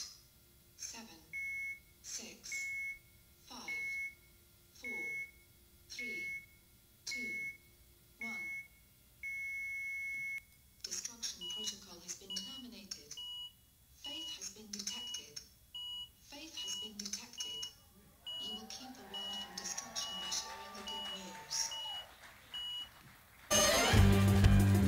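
Countdown sound effects: a short electronic beep with a falling swoosh about once a second, ending in a longer held beep. Then quicker electronic bleeps, about two a second, with wavering tones under them, broken off near the end by a loud burst of TV static hiss.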